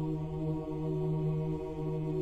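Russian Orthodox chant: voices holding one steady, sustained low chord.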